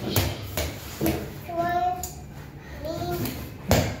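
A young child's high-pitched voice: two short, drawn-out calls without clear words. Several sharp knocks and thumps sound among them, the loudest near the end.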